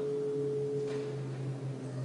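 Faint steady tones in the hall: a held mid-pitched tone that fades out a little over a second in, over a lower steady hum.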